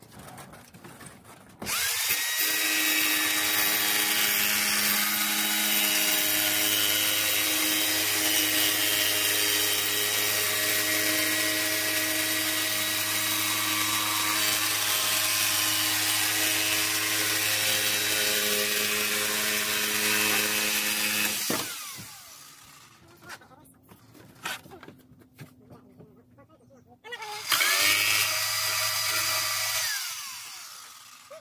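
Jigsaw cutting through a thin beadboard panel. The motor starts about two seconds in, runs steadily with a high whine for about twenty seconds, then winds down. After a pause with a few light knocks, it starts again near the end.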